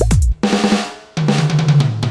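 Drum patch played live on a Yamaha DTX electronic percussion pad. The DJ-style beat of deep kicks breaks off less than half a second in for a crash hit that rings and fades, then a second hit with a low bass note.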